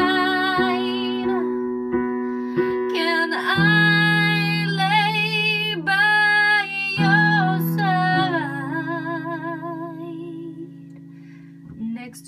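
A woman sings long held notes with a wavering vibrato over sustained chords on a digital piano, the closing bars of a slow soul ballad. The voice stops a little after the middle, and the piano chord fades away toward the end.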